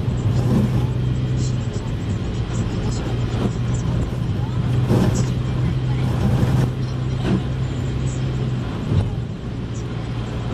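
A car's engine and tyres heard from inside the cabin while driving on a slushy, snow-covered road: a steady low engine drone over road noise, with a few light knocks. The drone dips briefly near the end.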